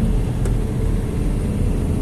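Steady low engine and road rumble heard from inside the cab of a moving vehicle.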